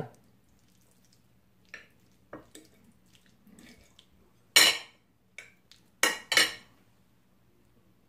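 Metal forks tossing spaghetti in cream sauce on a plate: scattered clinks and scrapes of the forks against the plate, the loudest a little past halfway and a pair about a second later.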